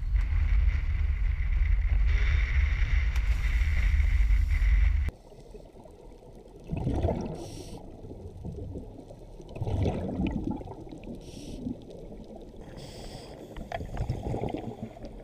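A steady low rumble cuts off abruptly about five seconds in. Then comes quieter underwater sound with swelling bursts of scuba regulator exhaust bubbles, three of them about three seconds apart, a diver's breathing rhythm.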